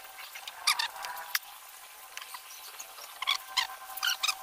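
Wooden stick stirring thick grey paint in a plastic bucket, scraping the bucket's sides with a few short squeaks.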